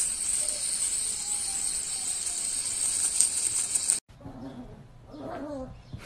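A steady high hiss that stops abruptly about four seconds in, followed by a few short, wavering mews from a kitten.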